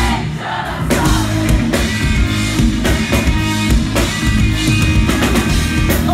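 Live pop-punk band playing at full volume: a steady, driving drum beat with guitars and a singer, with a brief drop-out in the drums just under a second in before they crash back in.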